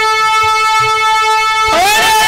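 Musical accompaniment: a keyboard holds one long, steady note under a few soft low drum taps, and near the end a voice swoops upward into a new note as the singing comes back in.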